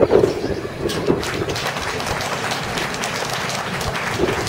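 A small crowd applauding: many hands clapping steadily, breaking out just after a man's voice stops at the start.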